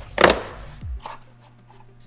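Cardboard shipping box and its packing being handled: one loud, brief scrape or rustle about a quarter second in, then quieter rustling of the packaging.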